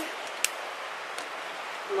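Steady hiss of diesel-soaked sawdust burning inside upended steel chimney pipes, the fire drawing air in through the open bottoms to burn out creosote. A lighter clicks once, sharply, about halfway through.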